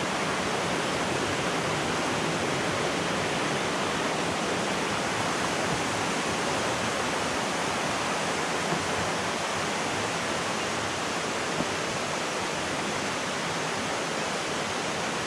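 Steady rushing of river water flowing over rocks, an even hiss that does not change.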